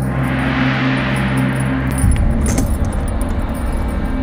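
Background score with a rising whoosh that fades over a steady low drone. About halfway through come a few sharp metallic clicks and rattles, like a door bolt or latch being worked.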